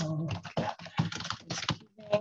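Typing on a computer keyboard: a quick, uneven run of keystrokes as a line of text is entered.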